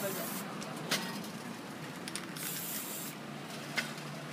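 Aerosol spray-paint can hissing in short bursts: one ending just after the start and another about two and a half seconds in. A sharp click comes about a second in and another near the end.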